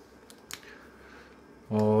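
A hard plastic phone case handled in the hands: faint rubbing with a couple of small sharp clicks in the first second. A man's voice says one word near the end.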